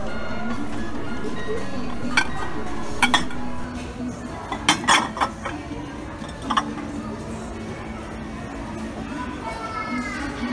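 Glass dishes clinking against each other as they are handled on a shelf: several sharp clinks between about two and seven seconds in, the loudest a quick pair near five seconds. Background music and murmuring voices run underneath, dropping in level a little over three seconds in.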